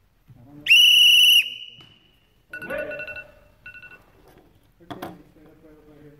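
A shrill whistle sounds once, a flat steady blast of under a second, marking time up for the two-minute naginata match. Brief voices follow.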